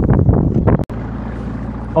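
Steady wind and boat background noise on an outdoor microphone, broken by an abrupt edit cut a little under a second in.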